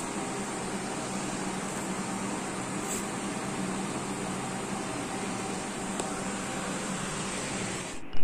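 Steady room noise: an even hiss with a low hum, unchanging throughout, with a faint tick about three seconds in.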